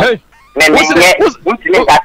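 Loud, rapid speech from a single voice, broken by a short pause just after the start.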